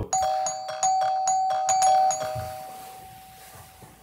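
A doorbell rings about six times in quick succession, pressed repeatedly. It is a single clear chime tone, and after about two seconds the ringing stops and dies away.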